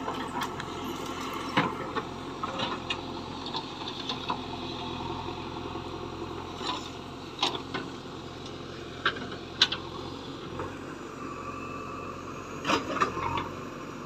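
JCB 3DX backhoe loader's four-cylinder diesel engine running steadily, with scattered sharp clicks and knocks from the machine now and then.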